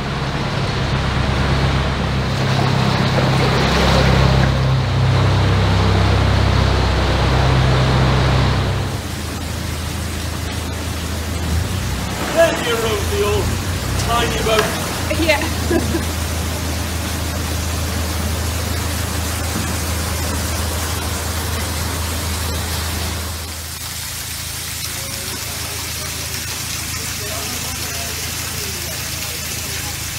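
A narrowboat's engine running steadily inside a stone canal tunnel, loudest for the first nine seconds. It then settles to a lower steady hum under a rushing noise, as water churns into the lock chamber while it fills.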